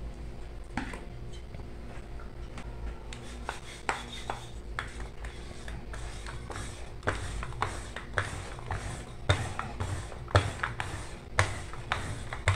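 Wooden rolling pin rolling out bread dough on a floured marble countertop: irregular light knocks and rubbing as the pin is pushed back and forth, the knocks coming more often in the second half.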